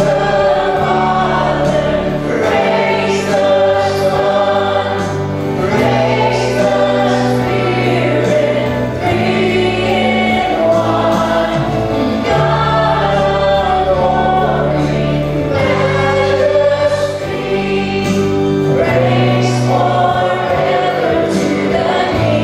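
Live church worship band playing a hymn: a woman and a man singing lead into microphones over acoustic guitar, organ and flute, with held low bass notes underneath.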